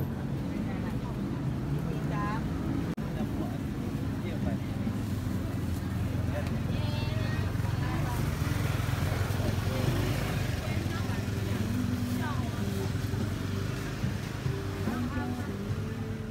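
Busy market ambience: scattered voices of people talking over a steady low mechanical hum.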